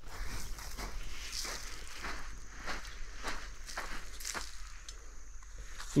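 Footsteps of a person walking on a grassy, sandy creek bank, at a steady walking pace.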